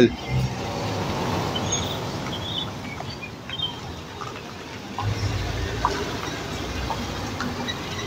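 Cars passing on a street, a steady wash of tyre and engine noise with a louder low rumble as a vehicle goes by about five seconds in.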